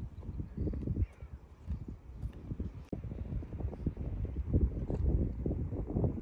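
Wind buffeting the camera microphone: an irregular low rumble that rises and falls in gusts.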